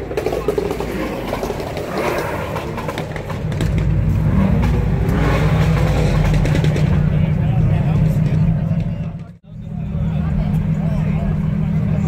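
A car engine running at a steady idle close by, a deep, even hum that grows louder about three and a half seconds in. The sound cuts out abruptly for an instant about nine seconds in, then the engine is heard again.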